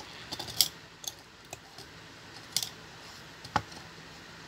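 Scattered sharp plastic clicks and taps as a toy car transporter's plastic trailer and a small 1:72 scale toy car are handled and fitted onto its decks, the loudest about half a second in, two and a half seconds in and near the end.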